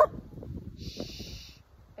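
Faint rustling and handling noise as the phone is turned, with a brief high hiss about a second in.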